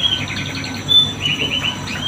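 Small birds chirping: a short high note about a second in, then a quick run of about five repeated high notes.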